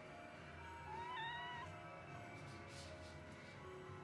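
A tabby cat gives one short, high meow about a second in.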